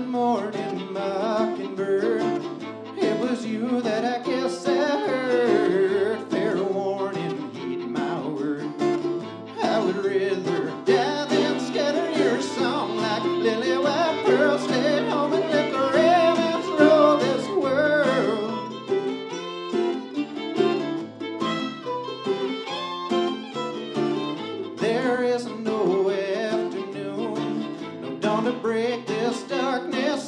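Live Americana song: a man singing over strummed acoustic guitar, with mandolin and fiddle playing along.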